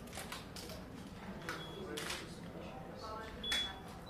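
Camera shutter clicks and a studio flash firing during a shoot: several sharp clicks, two of them followed by a short high beep, with low voices murmuring.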